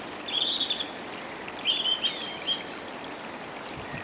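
Shallow woodland stream trickling steadily over leaves and twigs, with a songbird calling in short chirps during the first two and a half seconds.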